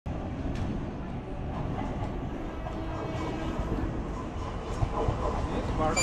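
Railway platform ambience: a steady low rumble, with an approaching EMU local train, and faint voices of people waiting. A train horn starts sounding right at the very end.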